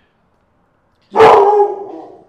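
A dog gives one sudden, loud, drawn-out bark about a second in, fading away over the next second. The dog is upset at another dog.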